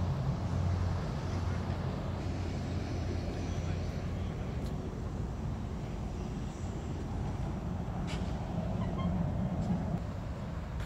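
Steady low rumble of city traffic, with a few faint clicks late on.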